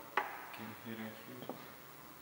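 A sharp click of a hand tool against the hard plastic of the tailgate and spoiler underside just after the start, and a lighter click about a second and a half in.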